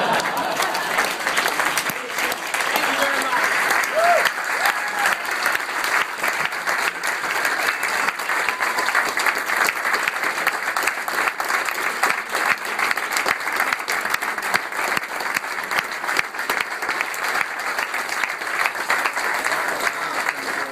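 A large crowd applauding steadily, with voices mixed in.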